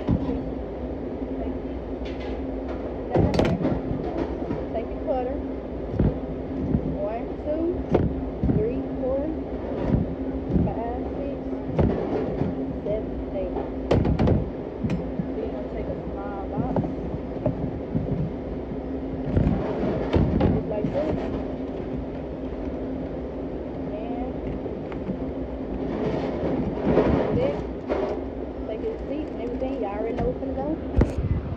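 Pizza being unpanned, cut and boxed on a steel counter: repeated sharp knocks and clatter of a metal pizza pan, cutter and cardboard box, over a steady hum of kitchen equipment.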